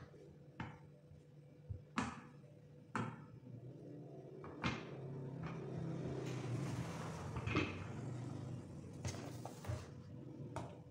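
Rolling pin working bread dough flat on a silicone baking mat: several sharp knocks in the first half as the pin is set down and moved, then a few seconds of steady rubbing rumble as it rolls over the dough.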